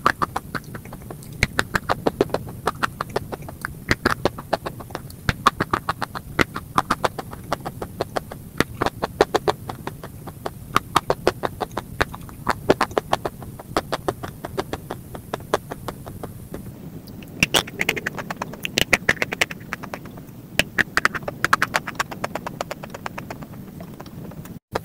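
Close-up crunching of frosty ice chunks being bitten and chewed: a rapid, irregular run of sharp crunches, several a second, that grows more clustered and louder in the last third.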